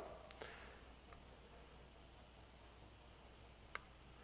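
Near silence, broken by a faint tick shortly after the start and one short, sharper click near the end: small clicks of an action camera being handled and fitted onto its mount on a cartridge dispensing gun.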